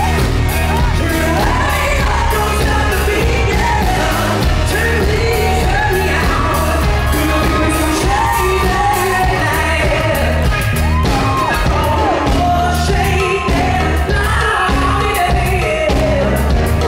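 Male pop singer singing live into a handheld microphone with a backing band of drums, bass and guitar. The vocal line slides up and down in ornamented runs over a steady beat.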